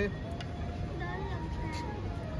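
Faint voices over a steady low background rumble, with one sharp click right at the start.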